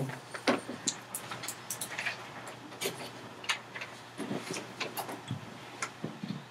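Scattered light clicks and knocks, the small handling noises of a pause in a classroom.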